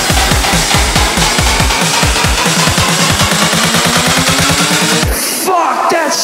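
Dubstep remix build-up: electronic drum hits rolling faster and faster under a rising synth line. The bass and drums cut out about five seconds in, leaving a sparse break before the drop.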